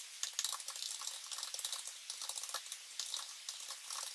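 Quiet, irregular rapid clicking of keys being typed on a computer keyboard, several soft clicks a second.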